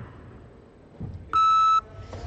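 A single electronic beep, one steady tone about half a second long, sounding in a large hall. A soft low thud comes just before it.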